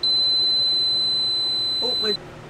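A single steady high-pitched electronic alarm beep lasting about two seconds from the battery test rig. It sounds as the lithium iron phosphate battery reaches the end of its discharge and the load cuts off.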